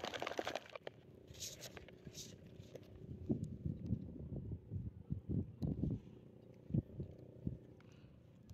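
Close handling noise from knit work gloves brushing and bumping against the phone's microphone while fingers work a fishing hook, as irregular soft thumps and rustles.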